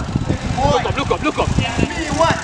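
Players' shouts and calls across the pitch during a small-sided football game, over a constant low rumble of background noise.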